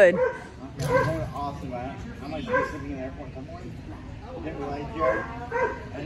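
German Shorthaired Pointer giving several short barks and yips while running an agility course, with a person's voice calling in between.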